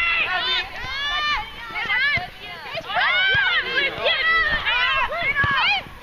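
Several high-pitched voices of women soccer players and spectators shouting and calling out during play, overlapping one another, with a few short thuds underneath.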